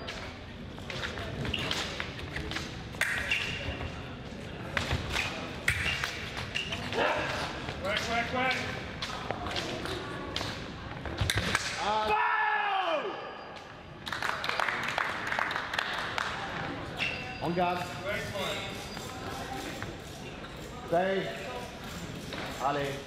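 Fencers' feet thudding and stamping on a metal piste in a large hall, over background voices. About twelve seconds in there is one long shout that rises and then falls in pitch.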